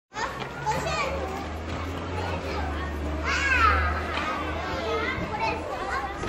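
Children's voices calling and shouting, with high gliding cries loudest about three and a half seconds in, over a steady low hum.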